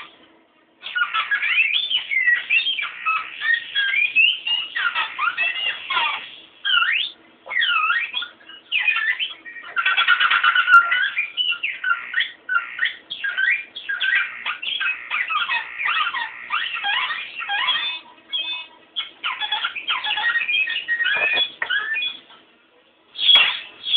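Electric guitar played through pitch-shifting effects, making quick squealing notes that slide up and down in pitch. They come in short bursts separated by brief gaps, with a denser, more sustained passage about halfway through.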